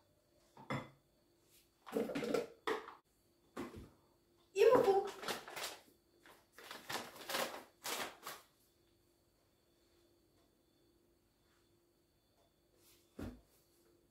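Handling noises of ingredients going into a Thermomix bowl: short bursts of scraping and rustling from a margarine tub and a paper flour bag through the first half, then a quieter stretch with a faint steady hum and a single thump near the end.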